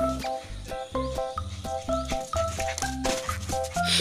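Background music: an upbeat tune with a steady beat, a repeating bass line and short bright melody notes.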